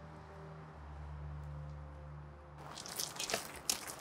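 A faint low hum, then from nearly three seconds in a run of irregular crunching clicks.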